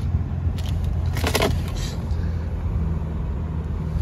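Steady low hum of a 2017 Ford Edge Titanium idling, heard from inside the cabin, with a brief rattle about a second in.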